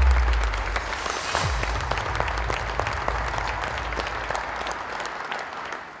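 Large audience applauding, a dense patter of many hands clapping, fading out steadily and stopping at the end, with the low tail of background music dying away under it.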